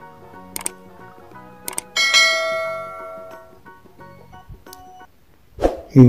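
Soft background music with two short clicks, then about two seconds in a bright bell chime that rings out and fades over about a second and a half: the click-and-bell sound effect of an animated subscribe button.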